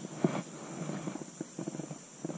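A baitcasting rod and reel being handled, with a sharp click about a quarter second in followed by a run of light, irregular clicks and knocks. A steady high insect buzz runs underneath.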